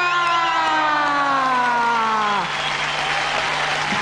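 A loud amplified tone from the stage, held and sliding slowly down in pitch, cuts off about two and a half seconds in, leaving the arena crowd cheering and applauding. A low steady hum runs underneath.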